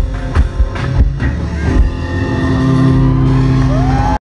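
Live rock band playing through a PA: drums and electric guitar, with the drum strokes stopping about two seconds in and a held chord ringing on to the end.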